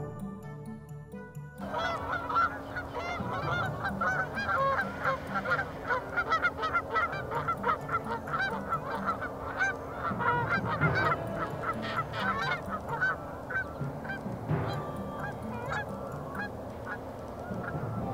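A flock of geese honking: many short, overlapping honks keep on without a break, beginning suddenly about a second and a half in and thinning a little toward the end.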